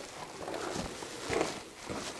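A few quiet footsteps on the dirt and loose-rock floor of a mine tunnel.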